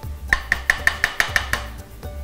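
Spatula clicking against a non-stick pan in quick, even strokes, about six a second, while stirring chopped nuts in hot ghee; the strokes stop shortly before the end.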